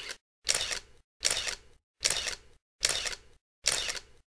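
Camera shutter sound effects: five shutter clicks at a steady pace of about one every 0.8 seconds, each trailing off briefly, with silence between them.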